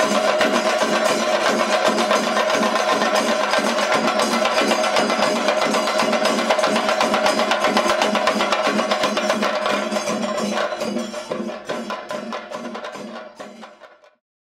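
Fast percussion music, drums struck in a dense rapid rhythm with a steady ringing tone over it, fading out over the last few seconds.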